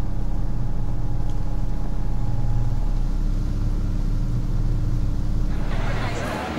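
A steady, low rumbling drone with a few held hum tones cuts in suddenly out of silence. Near the end it gives way to the chatter of a crowd.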